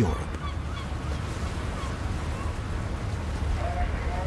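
Birds calling faintly over a steady low rumble: a few short calls in the first half, then a pair of lower calls near the end.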